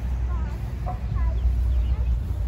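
Birds chirping: short, scattered calls that slide in pitch, over a louder steady low rumble.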